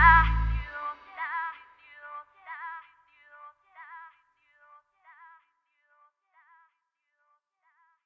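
End of a pop song with a female lead vocal: the beat and bass stop under a second in, leaving the last sung phrase repeating as a fading echo that dies away by about six seconds.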